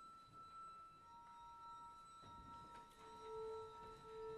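Faint, steady high tones held by the opera orchestra. A second tone joins about a second in and a lower one near the end, building a soft sustained chord.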